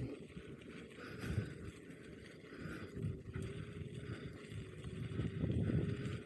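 Electric unicycle rolling over a gravel path: a low, uneven rumble of the tyre on grit, with faint scattered clicks of small stones.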